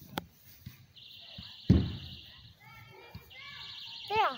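A single heavy thump on the ground about halfway through, as a child's body comes down on the lawn during a tumbling move, with a short click just before. A steady high-pitched buzz comes and goes around it.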